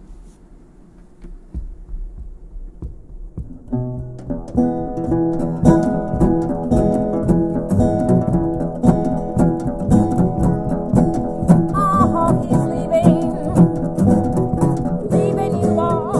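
Two acoustic guitars, a resonator guitar and a steel-string flat-top, begin a song's instrumental intro. A few soft low notes come first, then both guitars play together in a steady accompaniment from about four seconds in. A woman's voice starts singing right at the end.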